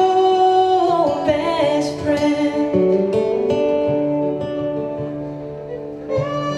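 Live song performance: a woman holds a sung note for about the first second, ending a vocal phrase. Then a plucked string accompaniment plays on, growing quieter toward the end.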